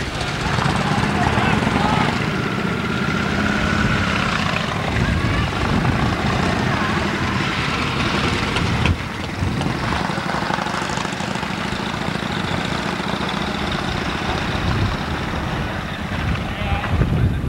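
Outdoor motorcycle show ambience: a steady mix of background voices and motorcycle engines running, over a constant rushing noise.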